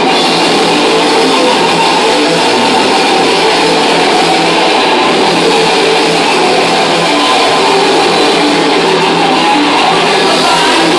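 Thrash metal band playing live: distorted electric guitars over bass and drums, loud and unbroken.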